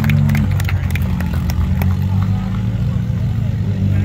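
Rock-crawler engine running steadily, its revs dropping a little about half a second in, with a few sharp clicks in the first second and spectators' voices faint behind it.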